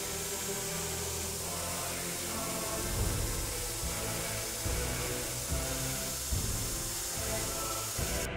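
Belt grinder running with a steady hiss as a forged laminated-steel knife blade is ground clean before tempering, under background music with a beat.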